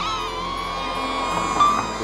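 DJI Neo mini drone's propellers whining at a steady high pitch as it hovers, just after a rising spin-up as it lifts off from the hand.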